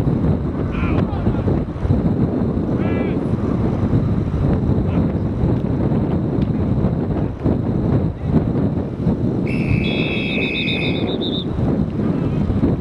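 Wind rumbling on the camcorder microphone with faint distant shouts, then, about nine and a half seconds in, officials' whistles sound for about a second and a half, one steady and one warbling, blowing the play dead after the tackle.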